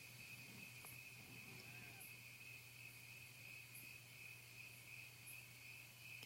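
Near silence: faint crickets trilling steadily, with a soft very high chirp about every second and a half, over a low steady hum.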